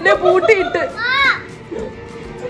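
Young boys' voices calling out excitedly, high-pitched with swooping rises and falls, dying down after about a second and a half.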